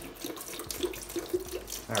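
Hydrogen peroxide pouring in a stream from a plastic bottle and splashing into the liquid already in a plastic tub, with short irregular gurgles. A voice starts right at the end.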